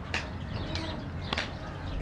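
Three sharp claps, evenly spaced about 0.6 s apart, setting the tempo of Adi talam before the count begins.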